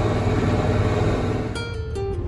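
Tractor engine running steadily under load, heard from inside the cab. About a second and a half in it gives way to acoustic guitar music.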